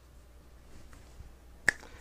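A single sharp click near the end, over a faint low hum.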